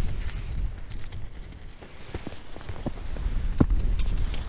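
Handling noise from a body-worn camera as the wearer moves: a low rumble of rubbing against clothing with a few scattered soft knocks and clicks, the sharpest near the end.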